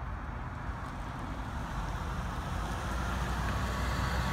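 Steady low rumble of a car's engine and road noise heard from inside the cabin, growing a little louder near the end.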